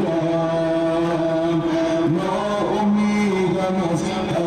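A man's voice chanting an Ashura mourning lament in long held notes, amplified through loudspeakers. The pitch shifts up about halfway through.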